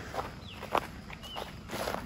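Footsteps of a person walking on grass, a few separate soft steps.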